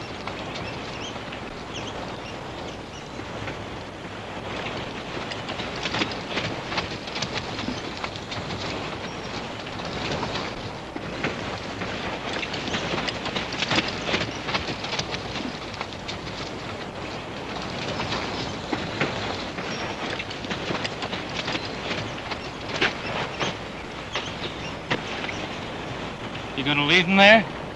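Footsteps crunching and scuffling on a dry dirt and gravel trail, with horses moving about: a rough, continuous crunching with louder bursts of quick steps.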